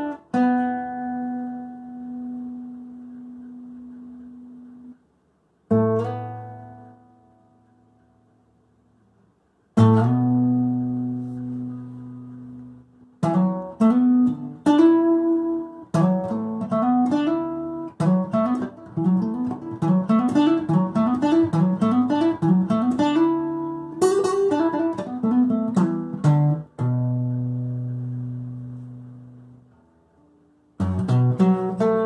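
Solo cutaway acoustic guitar, fingerpicked with no singing. A few chords are plucked and left to ring and die away. Then comes a quicker run of rising picked arpeggios through the middle, and it closes on chords that ring out.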